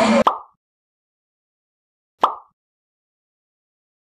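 Two short pop sound effects, about two seconds apart, each a quick click with a brief tone that dies away.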